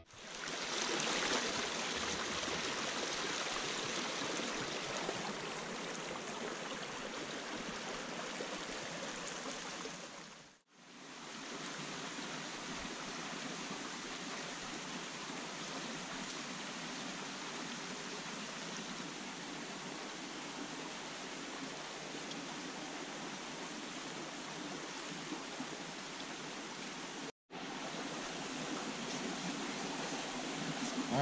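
Shallow rocky stream running, a steady rush of water over stones. It drops out briefly twice, about ten seconds in and again near the end.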